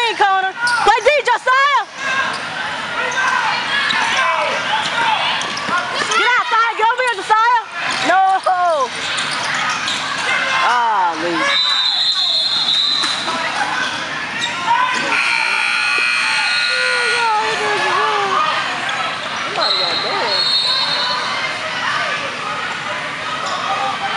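Indoor basketball game sounds: a ball bouncing on the court, shouting voices, and a high steady tone about halfway through, a referee's whistle.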